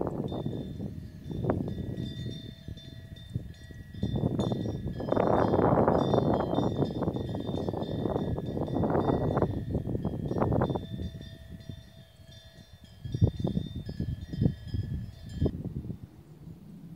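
Wind gusting on the microphone outdoors, swelling for several seconds in the middle. A steady high ringing like a chime runs underneath and stops just before the end, and there are a few sharp knocks near the end.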